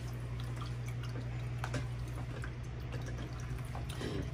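Small stacked-stone tabletop water fountain trickling steadily, with a low steady hum beneath and a few faint light ticks.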